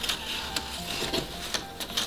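Paper strips rustling and sliding against one another as they are woven over and under by hand, with a few sharp ticks of paper edges.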